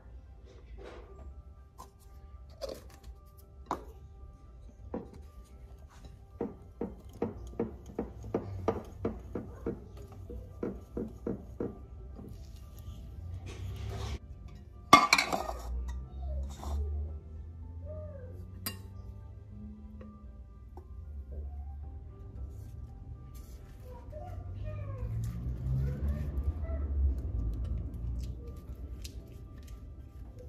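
A wire whisk beating cake batter in a glass bowl, clinking against the glass about three times a second. About halfway through, a loud metal clatter as an aluminium tube pan is set down; near the end, thick batter pours into the pan with a low rush. Faint background music throughout.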